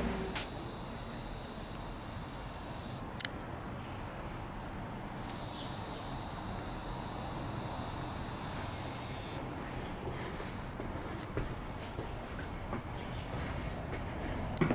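Quiet city street ambience: a steady low background rumble, with one sharp click about three seconds in and a few faint ticks near the end.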